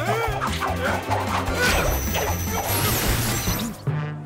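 Cartoon sound effects over background music: magic zaps and a crash as a spell strikes and transforms a character, with sweeping glides and a falling high whistle about three seconds in.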